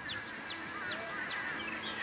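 A bird calling: four quick high notes, each sliding down in pitch, a little under half a second apart.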